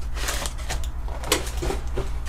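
Cardboard inserts and dividers of a trading-card box being handled: a scatter of light clicks, taps and scrapes, over a steady low hum.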